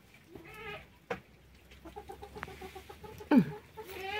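Domestic hens clucking in a poultry shed: a short call, then a quick run of low clucks, ending in a louder squawk that drops sharply in pitch near the end.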